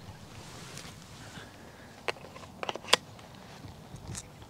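Handling noise from a handheld action camera: a few sharp clicks and knocks about two to three seconds in, the loudest near the end of that run, over a steady outdoor hiss.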